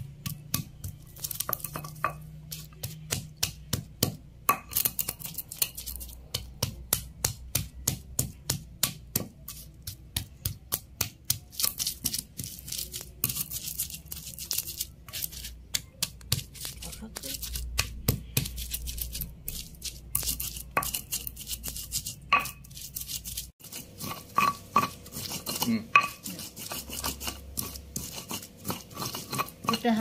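Stone pestle knocking and grinding in a flat stone mortar (Indonesian ulekan and cobek), crushing whole spices, shallots and chillies into a paste. There are sharp, regular knocks, roughly two a second, with grinding in between.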